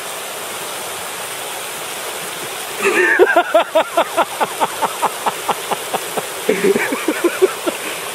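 River water running steadily. About three seconds in, a wire is shaken hard in quick regular jolts, roughly four or five a second, and a voice cries out in jerks in time with the shaking. The shaking eases near the end.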